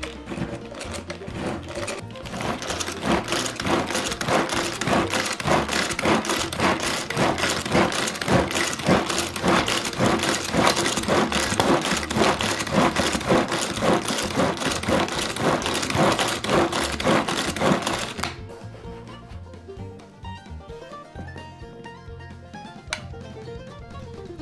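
A pull-cord manual food chopper whirring and rattling with rapid, repeated cord pulls as its blades chop fruit and ice cream into a smoothie, over banjo background music. The chopping stops suddenly about three-quarters of the way through, leaving only the music.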